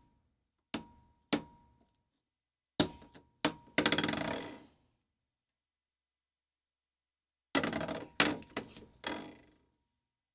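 Handling noise from splicing a snapped reel-to-reel tape: scattered sharp clicks and knocks of hands, tape and splicing gear against the deck, each dying away quickly. Two light clicks come first, a busier run of knocks and rattling about three seconds in, and another cluster of knocks near the end, with silence between.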